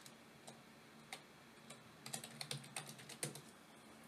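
Faint computer keyboard keystrokes: a few spaced taps, then a quick run of about a dozen from about two seconds in, stopping just after three seconds. They are the keys of a sudo password being typed at a terminal prompt and submitted.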